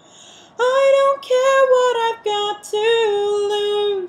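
A woman singing unaccompanied. After a quiet first half second she sings a phrase of held notes that step gently downward in pitch.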